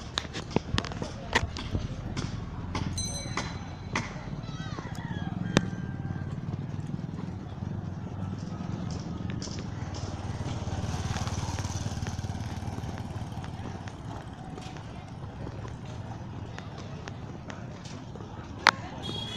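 Busy street ambience: distant voices of people, a steady low traffic rumble with a vehicle passing, a short high beep about three seconds in, and scattered clicks and knocks in the first few seconds.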